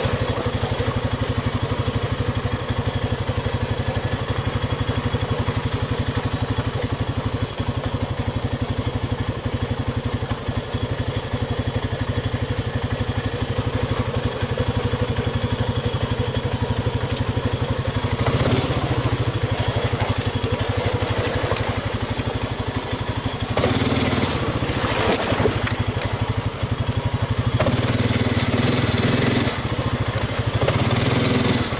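ATV engine running at low revs as the quad crawls along, then given throttle in several louder surges in the last third as it works over mud and driftwood logs.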